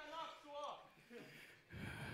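A faint voice speaking briefly, well below the nearby talk into the microphone; otherwise quiet.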